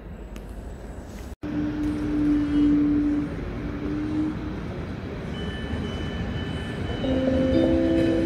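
Regional express train pulling into the platform: a steady rumble of the train with high whining tones that come and go, several at once in the second half. The sound cuts out for an instant about a second and a half in.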